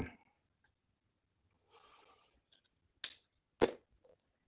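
Light handling noises from paint-pouring supplies: a soft brief rustle about halfway through, then two sharp knocks or clicks near the end, the second louder.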